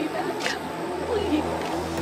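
A woman crying, her voice wavering and breaking in uneven sobs.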